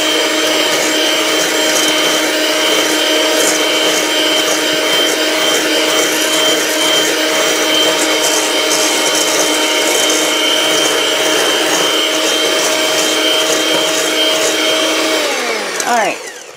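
Electric hand mixer with a whisk attachment running at a steady speed with an even motor whine, whipping egg whites in a stainless steel bowl almost to soft peaks. It is switched off near the end and the motor spins down.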